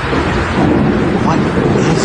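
Low rolling rumble of thunder on a phone recording, swelling about half a second in and holding to the end, with faint voices over it.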